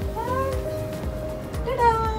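Background music with steady held notes, and a woman's brief high-pitched wordless exclamations: a short rising one just after the start and a louder, longer one near the end.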